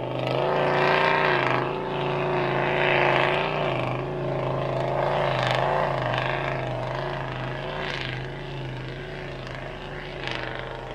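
Toyota Land Cruiser ute engine working at full throttle up a soft sand dune track, its revs wavering up and down as the tyres dig and slip, fading slowly as it pulls away.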